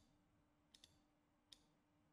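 Near silence with a few faint computer mouse clicks, two close together just under a second in and one more about half a second later, over a faint steady hum.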